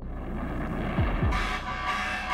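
Noisy outdoor ambience from archival footage, with a steady horn-like tone coming in about a second and a half in. Under it runs a dramatic background music score whose low beats come in pairs like a heartbeat.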